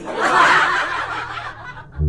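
A burst of snickering laughter lasting nearly two seconds, then cutting off.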